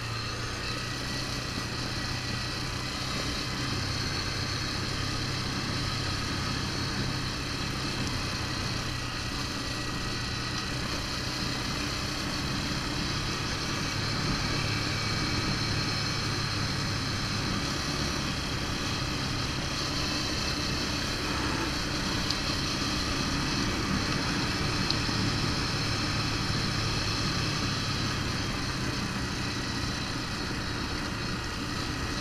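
Yamaha Raptor 350 ATV's single-cylinder four-stroke engine running steadily at an even cruise, with tyre noise from a gravel track.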